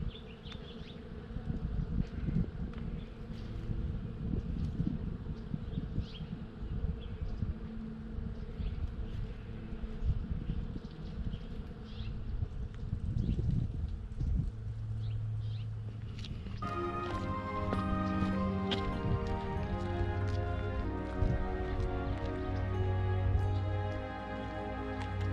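Many bees buzzing up in a blossoming tree, under a low, uneven rumble of wind on the microphone. Music comes in about two-thirds of the way through and carries on to the end.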